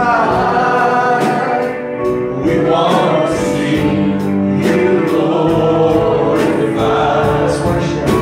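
Live gospel worship music: a slow praise song sung by a man into a microphone, backed by keyboard and electric guitar, with other voices joining in.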